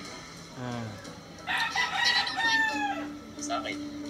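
A rooster crowing once: a long, loud call starting about a second and a half in, held, then falling off at the end.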